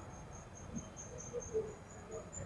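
Faint insect chirping: a high, even pulse repeating about five to six times a second, steady in pitch throughout.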